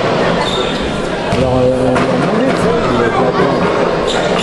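Basketball bouncing on a hardwood gym floor amid the steady echoing noise of a sports hall, with a man nearby starting to talk about a second in.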